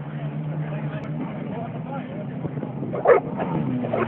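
Small watercraft engine running steadily, joined by two loud short calls about a second apart near the end.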